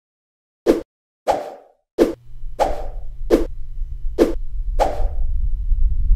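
Edited intro sound effects: seven sharp percussive hits, several trailing off briefly, over a low rumble that comes in about two seconds in and builds toward the end.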